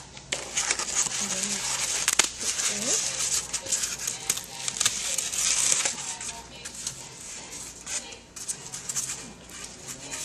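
Styrofoam rubbing and crackling as a freshly hot-knife-cut circle is worked loose and pushed out of the foam sheet. It is a dense run of scraping crackles for about six seconds, then sparser and fainter rubbing.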